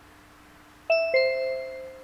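A two-note ding-dong chime, a higher note and then a lower one a quarter second later, both ringing on and fading away, at the start of a recorded listening track. A faint steady hum lies under it.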